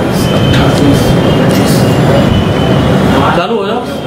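Indistinct voices over steady, loud background noise, dipping briefly near the end.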